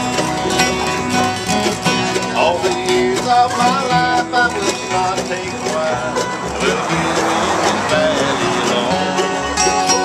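Acoustic bluegrass band playing an instrumental passage, with picked mandolins, banjo and upright bass.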